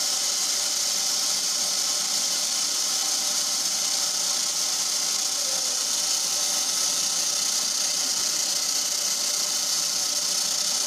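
Steady, even hiss with a low mechanical hum beneath it, without clatter or rhythm: an incense-stick making machine's motor running while the machine is not extruding.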